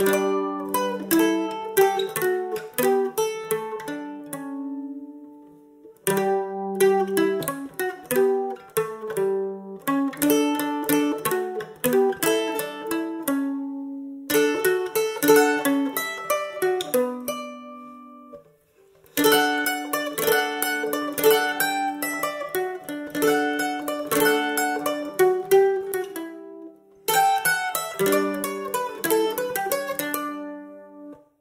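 Solo eight-string mandolin playing a traditional Polish folk melody, picked note by note in quick phrases. Each phrase ends on a note left to ring out and fade, with short pauses about five seconds in, near the middle, and again about 26 seconds in.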